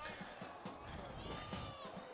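Faint sound of the match from the pitch: low background noise with one distant, drawn-out high call or shout whose pitch bends, about a second in.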